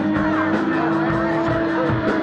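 Live rock band playing: electric guitar holding long notes with some sliding pitches over steady drum hits.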